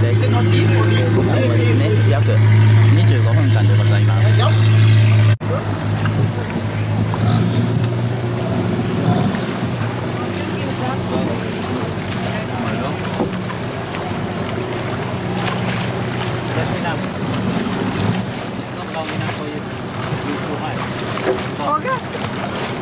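A longtail boat's engine runs with a steady low hum and stops suddenly about five seconds in. After that come water splashing and voices as snorkelers go into the water beside the boat.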